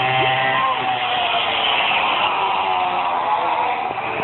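Small motor of a child's mini bike whining steadily, fading out about a second and a half in and leaving a hiss.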